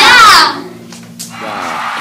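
A girl's brief, high-pitched cry in the first half second, the loudest sound here. A man's voice starts speaking near the end.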